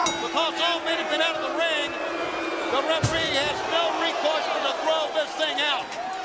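A single heavy slam about halfway through, from a hit at ringside in a wrestling brawl, over arena crowd noise and shouting voices.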